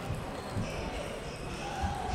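Table tennis balls clicking off tables and bats across a busy sports hall, with background voices.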